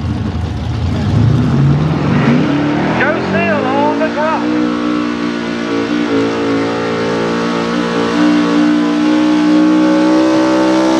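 Dodge Ram outlaw 4x4 pulling truck's engine revving up as the truck launches against the weight-transfer sled, its pitch climbing over the first few seconds, then held at high revs under full load with a brief dip about six seconds in.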